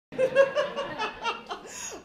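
A woman laughing into a handheld microphone: a quick run of high "ha" pulses, about five a second, trailing off after about a second and a half.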